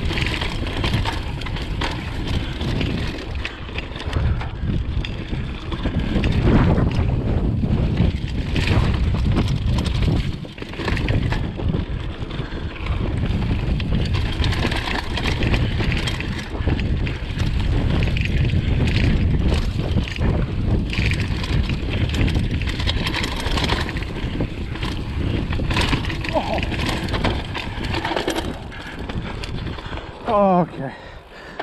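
Mountain bike tyres and frame rattling over rough dirt singletrack, with frequent knocks, under steady wind buffeting on the action camera's microphone.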